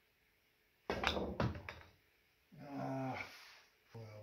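A cue tip strikes a golf ball used as a cue ball about a second in. Within about the next second come a few sharp clacks as the golf balls collide. After that there is a short, low, steady hum from a voice lasting about a second.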